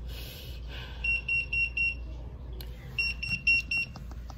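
Electronic beeper sounding two bursts of four quick, high-pitched beeps, about a second apart.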